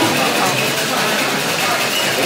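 Steady background chatter of many diners' voices blending together in a busy restaurant room.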